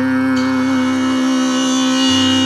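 Tanpura drone: its strings are plucked in turn and ring together on one steady pitch with a shimmer of overtones.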